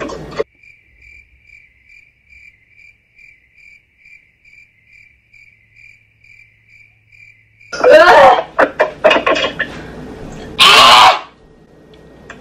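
Cricket chirping, about three chirps a second, over otherwise silent audio. About eight seconds in, a person gasps and coughs loudly after chugging a drink, with one more harsh cough-like burst about three seconds later.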